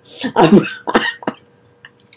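A woman laughing briefly in a few short breathy bursts that die away about halfway through.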